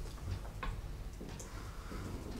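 Whiteboard marker writing on a whiteboard, a few faint irregular taps and scratches as the strokes are made.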